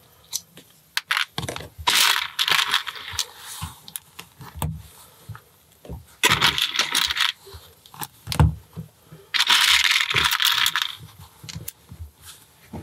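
Small plastic LEGO pieces rattling in three bursts of a second or so as a hand rummages through them, with scattered sharp clicks of bricks being handled and pressed together.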